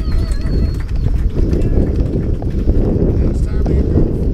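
A mountain bike rolling over a dirt and gravel track, picked up by a chest-mounted action camera. The tyres crunch and the bike rattles with many small knocks, over a constant wind and road rumble on the microphone.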